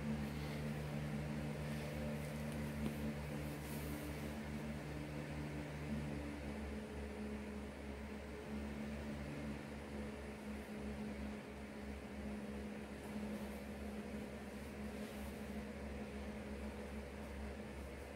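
A low, steady electrical hum under a faint hiss, made of a few steady low tones. One of the lower tones drops out about six and a half seconds in.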